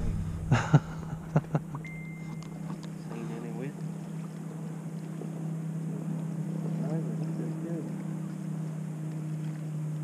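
Steady low hum of a bass boat's motor, with a few sharp knocks on the boat in the first second and a half and a short laugh. A brief high beep comes about two seconds in.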